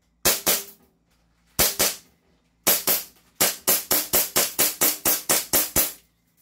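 SRC Hi-Capa 5.1 gas blowback airsoft pistol firing, each shot a sharp crack with its slide cycling. It fires a few spaced single shots and pairs, then a fast string of about a dozen shots at roughly five a second until the magazine runs empty.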